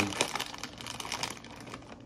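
Crinkling and crackling of a plastic Doritos chip bag being handled in the hands, a quick irregular run of small crackles.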